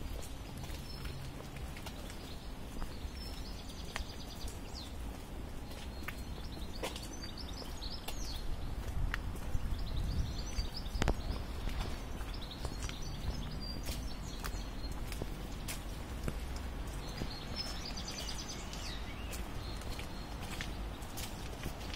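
Footsteps on a wet paved path, with small birds chirping now and then over a low steady background rumble.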